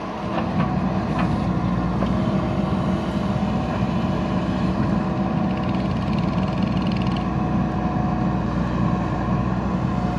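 JCB backhoe loader's diesel engine running under load as the backhoe arm digs into a pile of soil, the engine picking up just after the start and then holding steady. A few knocks come in the first couple of seconds.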